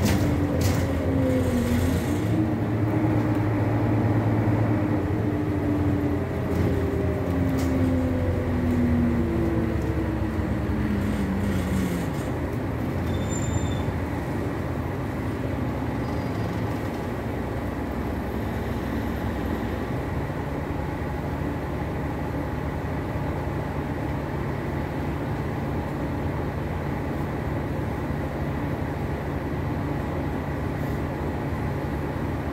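Renault Citybus 12M diesel bus heard from inside the passenger cabin: the engine and drivetrain whine glides in pitch, then falls away as the bus slows about twelve seconds in. After that comes a steady low engine rumble while the bus stands.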